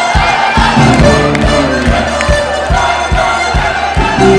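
Live band music with a steady drum beat, over a crowd cheering and shouting.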